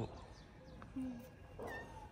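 A calico cat meowing, two short calls: one about a second in and another near the end.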